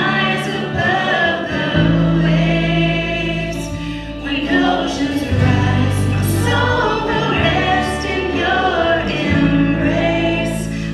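A live contemporary worship band playing a song: several voices singing together over electric guitar, keyboard and drums, the low chords shifting every few seconds.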